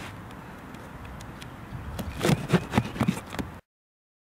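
Knife slitting the packing tape on a cardboard box: quiet handling at first, then about two seconds in a quick run of scratchy rips and taps against the cardboard. The sound cuts off suddenly near the end.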